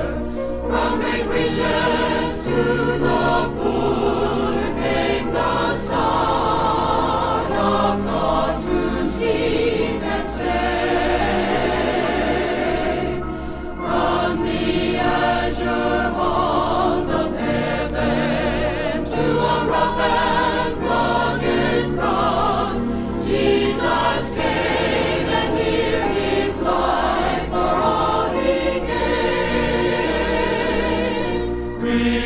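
A forty-voice choir singing a gospel song in harmony, the held notes wavering with vibrato, played from a 1968 vinyl LP recording.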